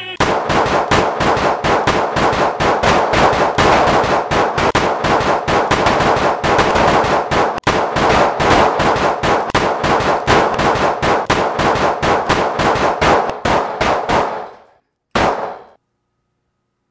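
Handgun gunfire in a long, rapid volley of several shots a second, lasting about fourteen seconds and trailing off. One last short burst follows near the end.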